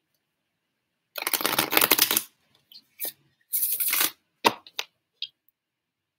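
A deck of tarot or oracle cards being shuffled by hand: a long rapid crackle of flicking cards starting about a second in, then several shorter bursts and a few sharp clicks as the cards are worked together.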